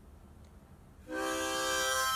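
Hohner Marine Band harmonica in C, blown: one held chord of several tones at once, starting about a second in.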